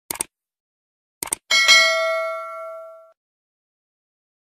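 A few short clicks, then a single bell-like ding that rings for about a second and a half and fades away.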